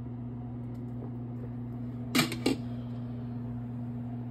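Glass pot lid lifted off a stainless steel skillet and set down with two sharp clinks about two seconds in, over a steady low electrical hum in the kitchen.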